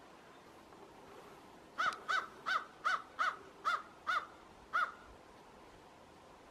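American crow cawing: a run of eight caws, about three a second, that stops abruptly.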